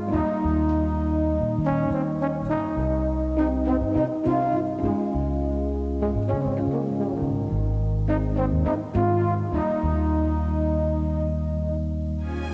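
Film score music: slow, held chords changing every second or so over a low sustained bass line.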